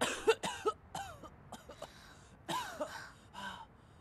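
A person coughing repeatedly in short, rough bursts.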